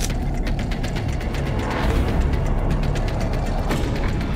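TV promo soundtrack built from rapid mechanical ticking and clicking, ratchet- or clockwork-like, over a heavy low bass, with a sharper hit just before the end.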